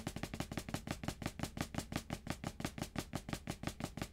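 Drumsticks playing hand-to-hand flams on a rubber practice pad on the snare drum: a quiet, steady stream of quick strokes. The flams come from loosening the grip on a forearm-driven double-stroke roll, so the stick runs freer and the doubles fall apart into flams.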